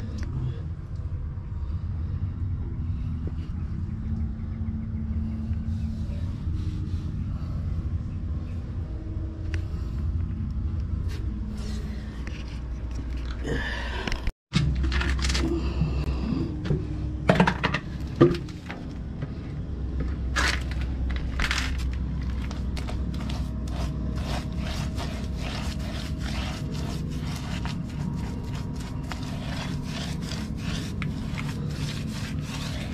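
A steel scraper spreading waterproofing coating over rough concrete, in repeated short scraping strokes that grow frequent in the second half. A steady low hum runs underneath, and the sound breaks off briefly about halfway.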